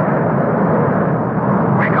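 Radio-drama sound effect of airliner engines running, a loud steady noise with no breaks. A voice comes in right at the end.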